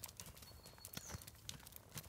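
Horse's hooves stepping on soft dirt footing at a walk: a faint, irregular series of soft hoof falls.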